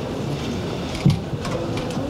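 Steady low background noise of a crowded press room during a pause between speakers, with a brief louder bump about a second in and a few faint clicks.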